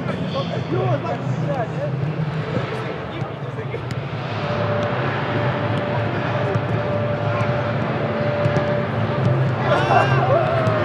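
Stadium ambience during a football warm-up: a steady low rumble with voices, and occasional short knocks of balls being kicked. A steady hum comes in about four seconds in and stops about nine seconds in.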